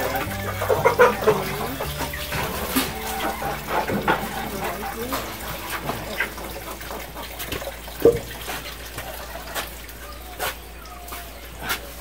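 Plastic bowls and dishes knocking and clattering as they are washed at a concrete wash sink, with hens clucking in the background.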